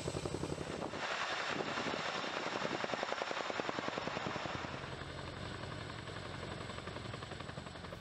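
CH-47 Chinook tandem-rotor helicopter in flight overhead, its rotor blades beating in a rapid, even chop. The chop eases off a little after about five seconds.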